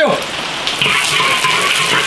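Steady hiss of rain falling.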